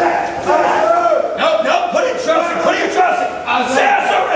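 Several men shouting over one another, loud and continuous, the way drill instructors yell commands at recruits.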